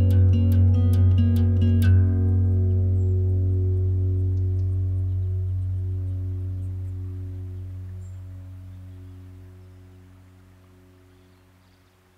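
The end of a recorded song: a run of plucked notes over a low sustained bass tone stops about two seconds in, and the final chord rings on, fading slowly to near silence.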